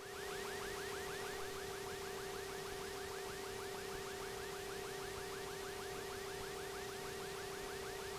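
A steady electronic tone with a fast, even warble repeating about five to six times a second, at a low level. It cuts in and cuts out abruptly.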